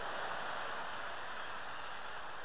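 Large theatre audience laughing together, a steady wash of crowd noise.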